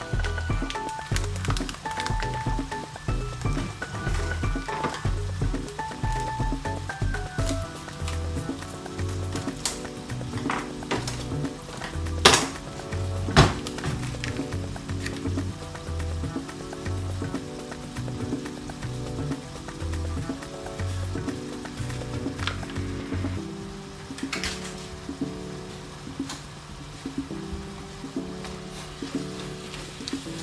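Background music over ground beef sizzling in a cast-iron skillet, with two sharp knocks about a second apart near the middle.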